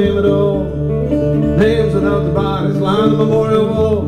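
Acoustic guitar played fingerstyle in a country-blues pattern, with a steady repeating bass under the melody notes.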